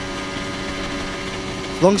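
Onboard audio of a Formula 1 car's turbo-hybrid V6 engine on a flat-out qualifying lap, holding a steady high note down a long straight.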